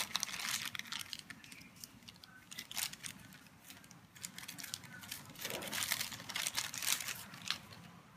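A thin clear plastic bag crinkles and rustles as it is handled and pulled open, in irregular crackles. They thin out after the first second or so and pick up again a little past the middle.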